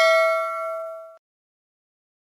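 Bell-like 'ding' sound effect of a subscribe-button notification-bell animation, ringing out with several clear tones and fading, then cutting off abruptly about a second in.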